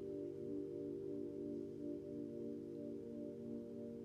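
Soft ambient background music: a sustained drone of several steady, ringing tones that waver and pulse slowly, like singing bowls.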